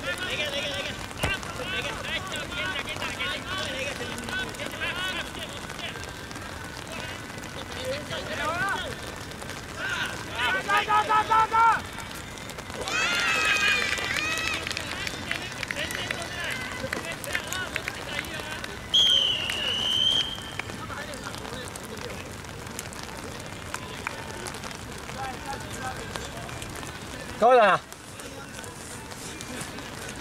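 Players shouting to each other during play, with louder calls about a third of the way in. A referee's whistle is blown once for about a second and a half, about two-thirds of the way through.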